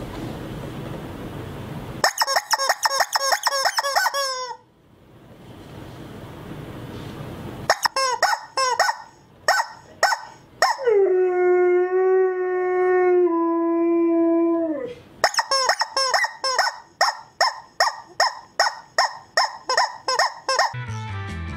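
Rubber chicken squeaky toy being squeezed: quick runs of short squeaks, about four or five a second, then a long held squawk that drops a step in pitch partway through, then another run of rapid squeaks. A hissing noise fills the first two seconds.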